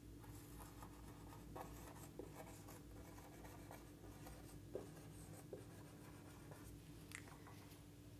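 Faint scratching strokes of a marker pen writing words on a whiteboard, with short pauses between strokes.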